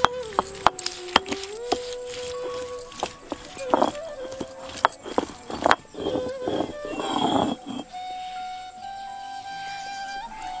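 Squeezed tomatoes being ground on a stone sil-batta: the stone roller knocks and scrapes wetly on the slab in a series of sharp clicks and a few longer grinding strokes, dying away near the end. Traditional flute music plays over it.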